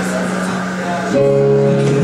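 Live band music: strummed acoustic guitar with sustained chords on a Casio Privia digital piano, a new, louder chord coming in about halfway through.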